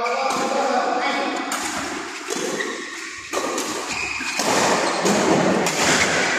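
Badminton doubles rally in a large hall: a string of sharp racket hits on the shuttlecock and thuds of footwork on the court, with short shoe squeaks and voices in the background.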